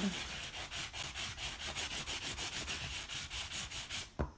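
Soft side of a sanding block rubbed gently back and forth over dried spackle on a wooden board, smoothing a raised stencil design, in quick, even strokes.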